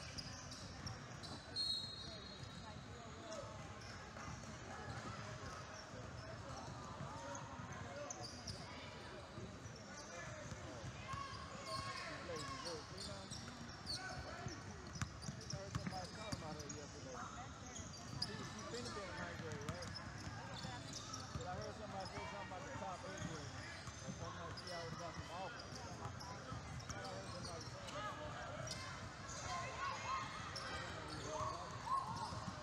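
Basketball game sounds on a hardwood court: a ball bouncing in scattered knocks amid a constant murmur of indistinct voices from players and spectators.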